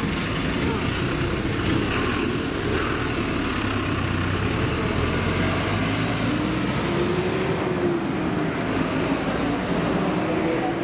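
City road traffic: cars and a bus running past in a steady stream, with a low engine hum strongest through the middle.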